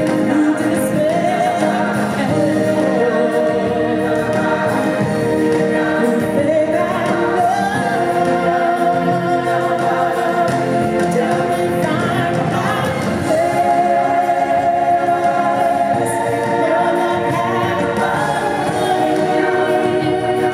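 Show soundtrack music: a choir and sung vocals with long held, wavering notes over steady accompaniment.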